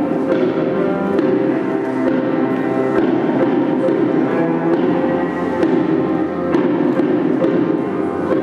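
Grand piano playing ringing, bell-like chords with a cello in an instrumental passage of a classical art song, fresh chords struck about every second.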